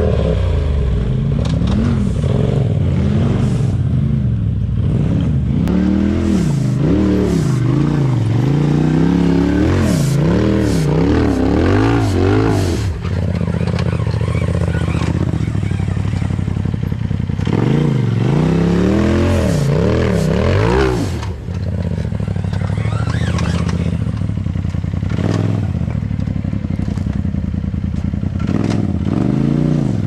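Tube-chassis Polaris RZR side-by-side engine revved up and down in short repeated blips while crawling a rock ledge, with rocks clattering and scraping under the tyres.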